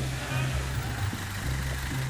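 Flatbed tow truck's engine running at low revs as the loaded truck creeps and turns, a steady low drone that pulses slightly.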